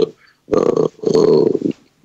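A man's voice making two drawn-out hesitation sounds at a steady pitch, about half a second in and running to just before the end, as he searches for a word mid-sentence.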